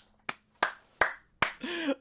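A man clapping his hands: four sharp, separate claps a little under half a second apart.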